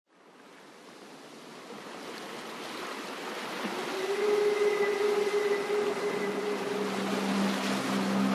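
A soft, surf-like noise wash fades in steadily over about four seconds. Held tones join it about halfway in, and a lower sustained chord comes in near the end: the opening of an ambient background music track.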